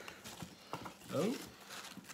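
Hands rummaging through a cardboard box of polystyrene packing peanuts and bubble wrap: scattered rustling and light clicks.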